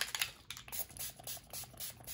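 Rapid spritzes from a Distress Oxide pump spray bottle misting ink onto paper, about five short hissing sprays a second.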